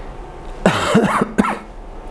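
A man coughing twice, a longer cough a little past halfway and then a short one right after.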